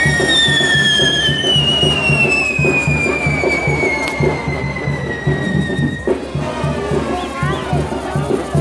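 Fireworks on a pyrotechnic frame figure whistling: several whistles glide slowly down in pitch and die away about six seconds in. Music with a steady low beat plays throughout.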